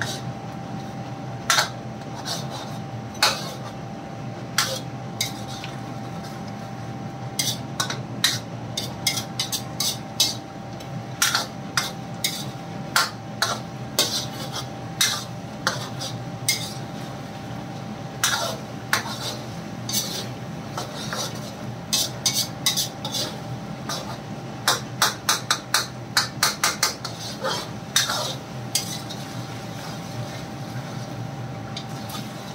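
A steel spoon clinks and scrapes against a metal karahi as chicken, tomatoes and spices are stirred and mashed in ghee. The strikes come irregularly, sparse at first and then more often, with a quick run of taps about three-quarters of the way through.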